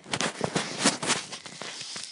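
Rustling and rubbing noise with many short clicks, loudest in the first second: handling noise on a phone's microphone as it is moved.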